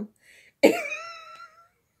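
A woman's sudden burst of laughter just over half a second in, a single voiced outburst that trails off within about a second.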